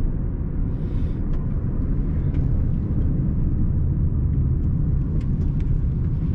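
Car driving along a road, heard from inside the cabin: a steady low rumble of tyre, road and engine noise, with a few faint light ticks.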